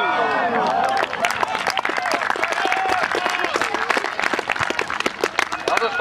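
A small football crowd clapping, with voices calling out over the applause.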